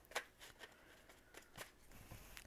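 Faint rustling of a stack of paper banknotes being handled, with a few soft ticks as the bills are squared up and shifted.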